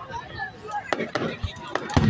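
Fireworks display: aerial shells bursting in a few sharp cracks about a second in and again near the end, then a deep boom right at the end.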